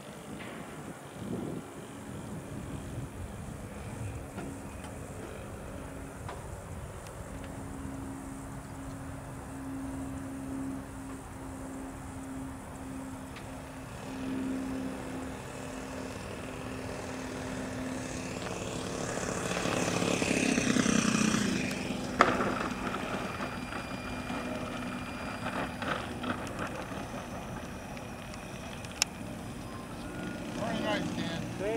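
Saito 1.00 four-stroke glow engine of an RC P-40 model, fitted with a Keleo exhaust, running at low throttle on landing approach. It swells as the plane comes in close about two-thirds of the way through, its pitch falling as it goes by, and there is a sharp knock as the model touches down.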